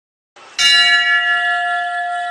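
A bell struck once about half a second in, ringing on with a long, steady, slowly fading tone.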